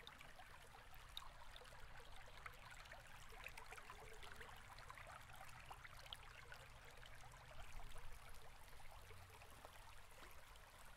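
Near silence: faint room tone with scattered soft ticks.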